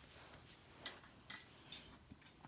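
Near silence: room tone with three faint, brief clicks about half a second apart.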